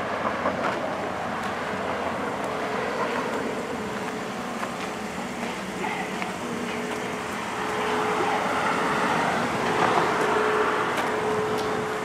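Steady outdoor background noise, a traffic-like hum with a faint steady tone. It gets a little louder about two-thirds of the way through.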